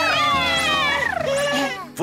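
A high-pitched, cat-like cartoon cry, drawn out and gliding down in pitch over nearly two seconds.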